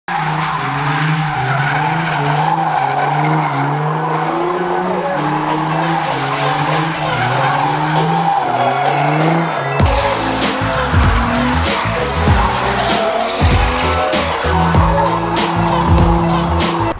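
Nissan 350Z drifting, its tires squealing on asphalt as its V6 engine runs. Background music plays throughout, and its drum beat comes in about ten seconds in.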